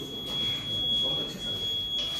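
A steady, high-pitched electronic tone held without a break, over a faint room murmur.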